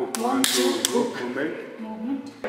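Bare-fisted punches smacking into a trainer's open palm as a pad target: three sharp slaps within the first second, with voices under them.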